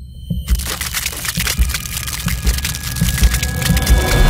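Intro music with a low bass beat, joined about half a second in by a dense crackle of many small clicks. It is a shattering sound effect, and it builds and grows louder toward the end.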